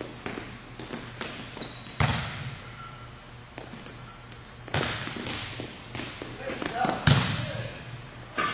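A volleyball being struck during passing and digging drills in a gym: three loud, sharp smacks about two, five and seven seconds in, echoing in the hall, with smaller knocks and short high sneaker squeaks on the court floor between them.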